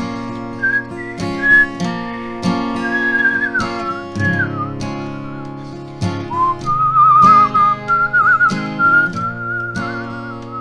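A man whistles a wavering melody over a strummed acoustic guitar, the whistling breaking off near the middle and taking up again a moment later while the strumming keeps going.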